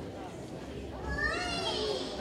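Murmur of children's voices in a hall, with one child's high voice rising clearly above it about a second in.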